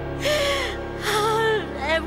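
A woman's strained, forced laughter through tears: two breathy, gasping sob-laughs, with background music underneath.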